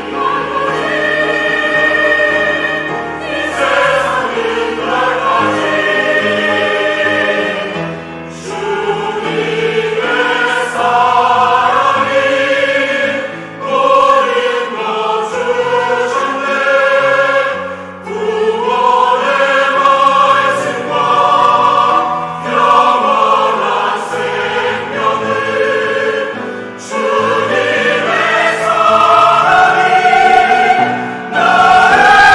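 Mixed church choir singing a Korean sacred anthem in several parts, in long sustained phrases with brief breaks for breath.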